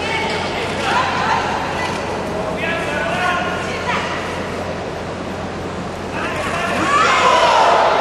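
Spectators' and coaches' shouting voices over a steady crowd murmur in a large hall, in several bursts, with the loudest shouting near the end.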